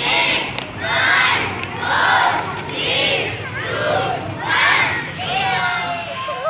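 A group of children shouting together in unison, about once a second, in the rhythm of a countdown to a small rocket launch.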